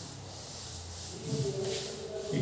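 Soft rubbing and scratching, with a short, low, steady hum of a man's voice in the second half.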